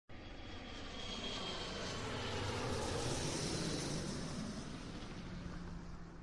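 Airplane engine noise, a steady rushing drone that swells to its loudest about three seconds in and then fades away.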